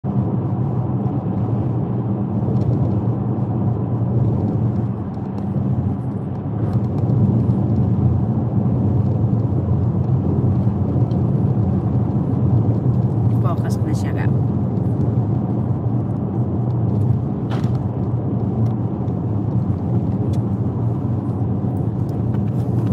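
Steady cabin noise of a car driving on an open road: engine and tyre rumble, constant and low. A few brief clicks come about two-thirds of the way through.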